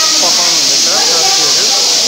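Steady, high hiss from a wok of food frying over a lit gas burner, with several people talking underneath.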